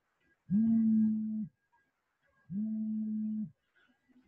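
Mobile phone signalling an incoming call: two steady buzzes of about a second each, a second apart, the second quieter.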